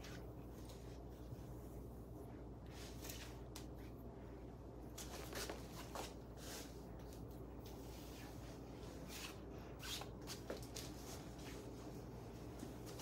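Faint, scattered soft rustles of a rat-tail comb being drawn through long straight hair and of hands handling the hair, over a low steady room hum.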